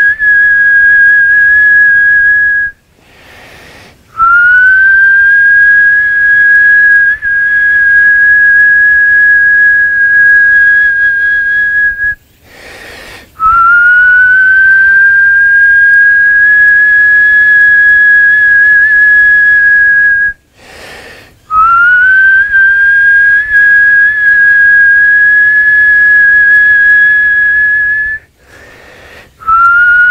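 Whistling on one high, steady note. Each note is held about eight seconds, with short gaps between them, and each new note starts slightly lower and slides up to the same pitch.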